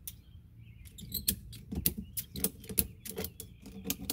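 Ratchet strap being worked tight around a stacked beehive: an irregular run of sharp metal clicks and knocks starting about a second in.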